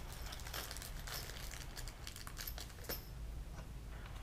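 Faint, irregular small clicks and ticks as rivets are fitted by hand into the holes of a paramotor engine's air box.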